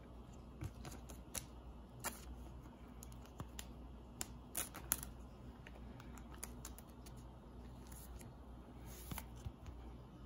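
Faint, scattered clicks and rustles of a trading card being handled and slipped into a plastic card sleeve, mostly in the first half and again once near the end, over a low steady room hum.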